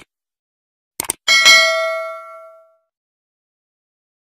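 Subscribe-button sound effect: a mouse click at the start and a quick double click about a second in, then a bell ding that rings out and fades over about a second and a half.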